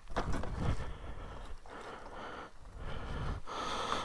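Irregular breathy huffs and rustling close to a helmet-mounted microphone, with no steady engine tone.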